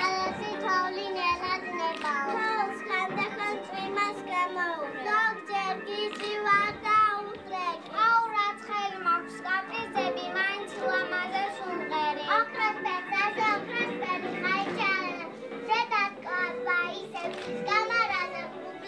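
Background music playing under many overlapping young children's voices.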